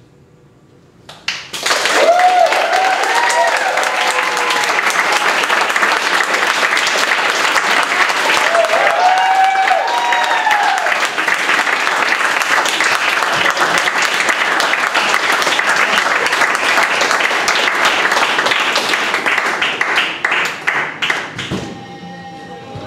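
Audience applause breaking out suddenly after a hush, about a second and a half in, with a couple of bursts of whooping cheers. The clapping thins out and fades near the end.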